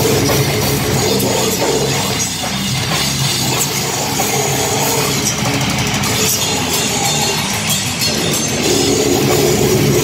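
Metal band playing live and loud: electric guitars through amp stacks with a drum kit, a dense wall of sound with no breaks.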